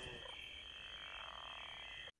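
Faint night-time ambience of frogs croaking, low and steady under a thin high-pitched hum.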